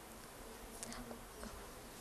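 Faint room tone: a steady, even hiss with no distinct event.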